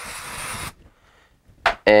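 Aerosol can of dye-penetrant cleaner sprayed once onto a rag: a single short hiss lasting under a second.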